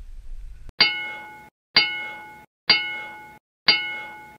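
Four identical bell-like dings, about one a second, each struck, ringing briefly with several clear pitches, then cut off abruptly: a chime sound effect added in editing.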